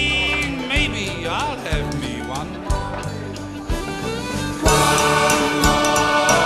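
Band playing a country-style pub song between sung lines, with a wavering lead melody; the music gets louder and fuller a little before the end.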